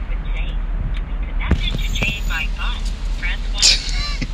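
Steady low rumble inside a car's cabin, with voices talking and laughing over it, strongest in the middle seconds.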